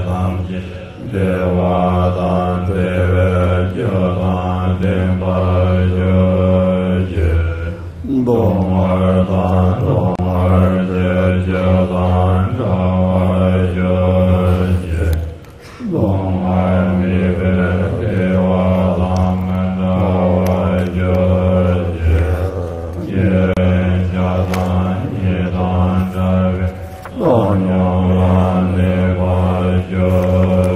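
A man's voice chanting a Tibetan Buddhist prayer in a low, steady monotone, in long held phrases broken by short breath pauses every few seconds.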